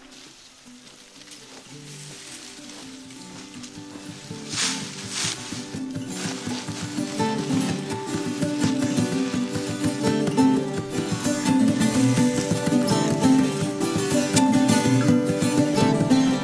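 Background music of a plucked acoustic guitar, fading in from very quiet and growing steadily louder, with a couple of brief rustles a few seconds in.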